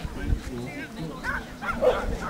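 A dog barking a few times in short calls, the loudest near the end, with people talking around it.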